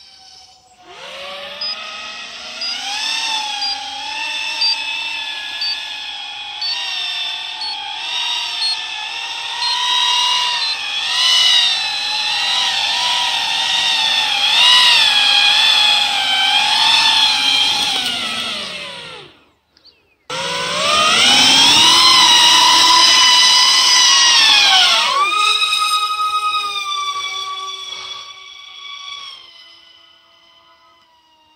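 VTOL RC plane's motors and propellers whining in hover, the pitch wavering up and down as the throttle is worked. The sound breaks off for a moment about two-thirds through, comes back loud, then the pitch falls away as the motors slow near the end.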